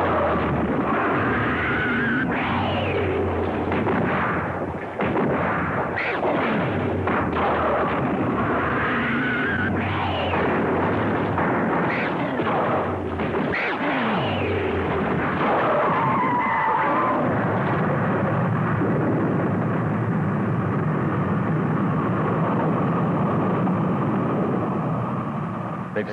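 Giant-monster battle sound effects: screeching roars that swoop up and down in pitch, repeated every second or two over a continuous rumble of crashes. Past the middle the cries die away into a steadier rushing roar.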